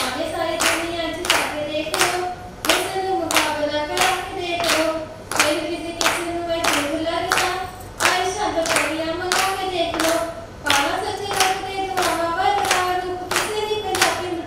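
A woman singing into a microphone while a group of women clap along in a steady beat, about three claps every two seconds.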